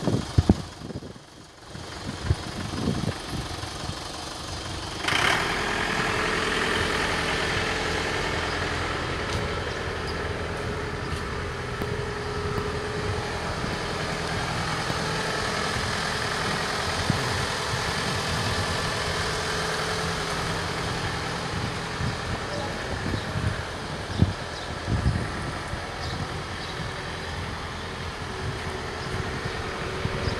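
Iseki 467 tractor's diesel engine running as it is driven onto a truck: quieter with a few knocks at first, then louder from about five seconds in and holding steady, with a couple more knocks past the middle.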